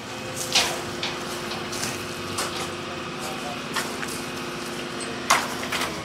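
Excavator's diesel engine running steadily at idle while it holds a load on its chains, with a few sharp metallic knocks spread through, and the engine note drops away just before the end.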